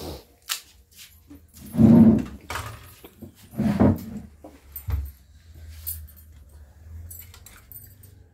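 Clinks and light knocks of steel plates, bowls and spoons on a table, with two brief vocal sounds about two and four seconds in that are the loudest things heard.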